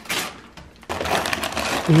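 Gift-wrapping paper being torn and crumpled by hand as a present is unwrapped: a short rip, then from about a second in a longer bout of crackly tearing and crinkling.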